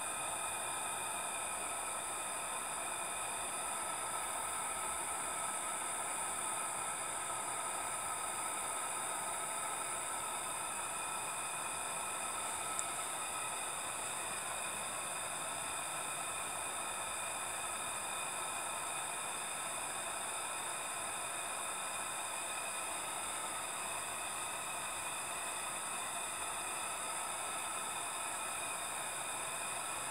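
Miniature steam plant under way: a steady hissing whir from the small fired brass boiler and engine, unchanging throughout.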